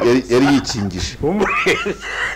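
Men talking animatedly in the studio, with a man starting to laugh in high-pitched bursts near the end.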